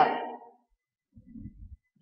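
A woman's voice trailing off with a short room echo, then near silence broken by a faint low sound about a second and a half in.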